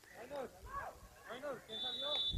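Faint voices calling on the pitch, then near the end a short, steady, high-pitched blast of a referee's whistle.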